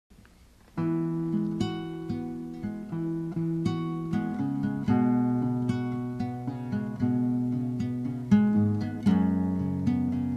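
Instrumental song intro of plucked acoustic guitar, picking out notes one after another. It begins under a second in.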